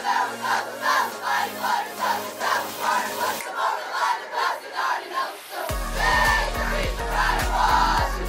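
A group of young women singing and shouting a song together in a rhythmic chant. A low rumble with knocking starts suddenly near the end and carries on under the voices.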